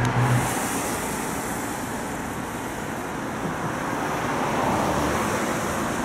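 Road traffic noise: a steady wash of passing cars on a nearby street, swelling a little and easing near the end.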